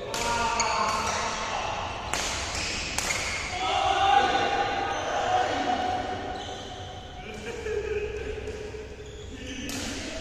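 Badminton rackets striking the shuttlecock during a rally, sharp cracks about five times, several close together in the first three seconds and one near the end, echoing in a large hall. Players' voices call out between the hits.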